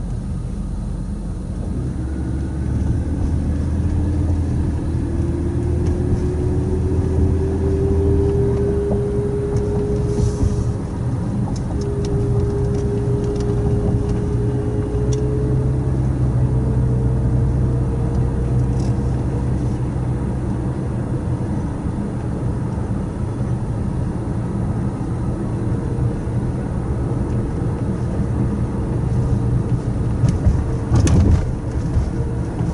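Car driving on a town road, heard from inside the cabin: steady engine and tyre rumble, with a faint whine that rises in pitch as the car gathers speed over the first several seconds and climbs again later.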